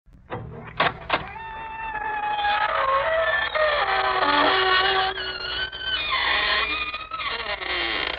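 Old-time radio opening: organ music starting with two sharp stabs, then sustained shifting notes, with the long creak of the show's signature creaking-door sound effect. The sound is thin and muffled, like a 1940s broadcast recording.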